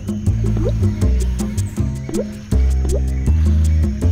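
Background music with a strong bass line and a steady percussive beat, with short rising sounds recurring about every second over it.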